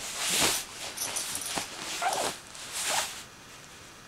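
Greater Swiss Mountain Dog puppy playing on a bed: several bursts of rustling bedding as it tumbles about, with a brief whine about two seconds in. It settles and goes quieter near the end.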